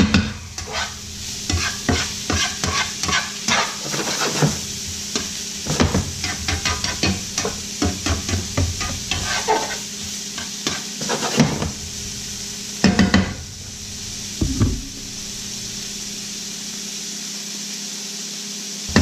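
Shrimp, lump crab meat and diced vegetables sizzling in a stainless sauté pan while a metal spatula scrapes and clinks against the pan as they are stirred. A couple of louder knocks of the spatula come about two-thirds of the way in, then the stirring stops and only the steady sizzle is left.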